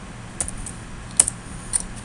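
A few scattered computer keyboard keystrokes, sharp separate clicks, over a low steady hum.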